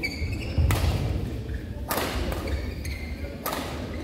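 Badminton rally: rackets strike the shuttlecock three times, about a second and a half apart, with short shoe squeaks and foot thuds on the court floor.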